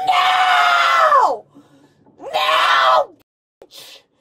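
A woman screaming in the back seat of a police car: one long scream that breaks off about a second and a half in, then a second, shorter scream after a short pause.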